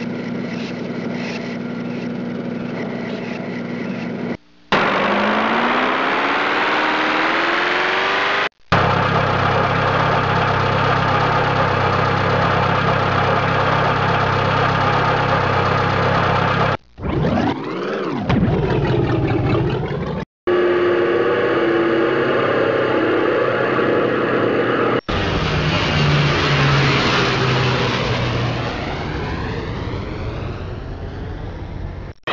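Engine sound made of several recordings spliced with abrupt cuts every few seconds: steady running, one stretch where the pitch climbs steadily as the engine winds up, and one where the pitch dips and rises again.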